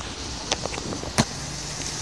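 Handling noise from a handheld phone being moved: two sharp clicks, about half a second and just over a second in, over steady outdoor background noise with a low rumble.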